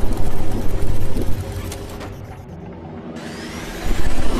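Documentary soundtrack: a heavy low rumble with sustained droning tones. It dips in level through the middle and swells back sharply near the end with a rising sweep.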